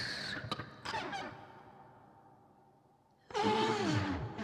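Free-improvised vocal sounds into a microphone. A breathy, hissing sound fades out, then come a few small clicks and a falling glide that dies away almost to silence. Near the end a loud voice enters abruptly and slides down in pitch.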